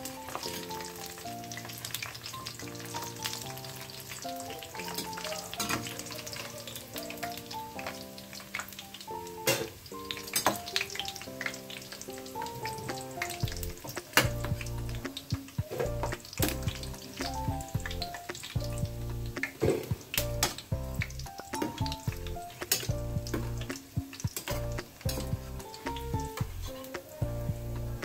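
Urad dal vadas sizzling as they deep-fry in hot oil in a steel frying pan, with scattered clinks of a steel slotted spoon against the pan as they are turned and lifted out. Soft background music with a gentle melody plays over it, and a bass line joins about halfway through.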